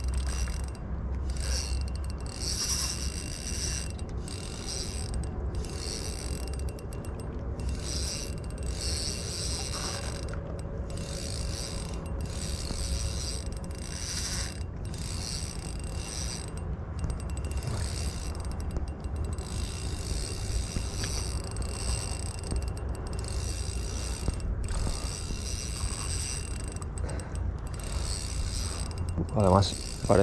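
Daiwa Certate spinning reel being cranked steadily, its gears and line roller whirring as a hooked fish is played in, over a low continuous rumble.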